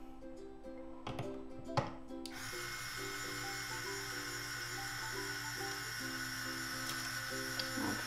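A Jowoom Smart Tuner T2's small electric motor starts about two seconds in after a couple of clicks and runs steadily, turning the ukulele's tuning peg to wind on a new C string. Background music plays underneath.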